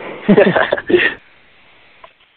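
Brief laughter over a telephone line, lasting about a second, then only faint line hiss.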